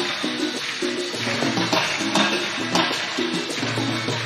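Live Latin pop band playing an instrumental passage: a steady percussion beat over bass and sustained chords.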